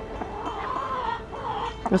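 A young hen giving a couple of soft, low clucks while she is held in someone's arms and stroked.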